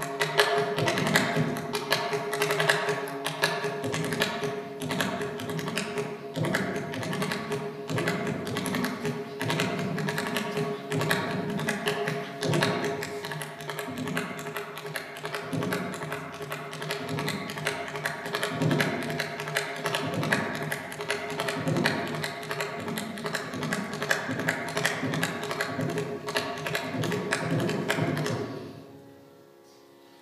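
Mridangam played in a fast, unbroken stream of strokes: the tuned right head rings a steady pitch while the left head (thoppi) adds bass strokes beneath. The playing stops about a second and a half before the end.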